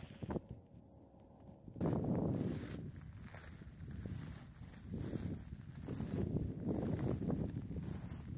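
Footsteps crunching on beach gravel over a low, uneven rumble. The first two seconds are nearly quiet.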